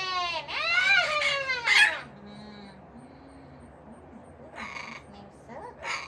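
Parrot calling loudly: high-pitched, wavering cries for about two seconds, then a pause and shorter harsh squawks near the end.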